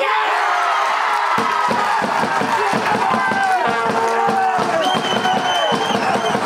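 Players and spectators cheering and shouting together as a late winning goal is scored, many voices at once, with repeated low thumps underneath from about a second and a half in.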